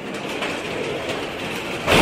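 A steady rumbling, rattling noise with faint clicks, swelling sharply louder near the end.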